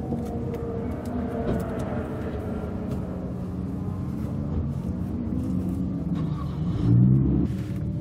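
Subaru Impreza WRX (GDA) turbocharged flat-four idling steadily, heard from inside the cabin, with a brief louder low swell about seven seconds in.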